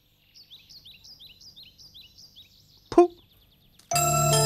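A bird chirping in a quick run of short, high sweeping notes for about two seconds, then a single sharp knock, the loudest sound, about three seconds in.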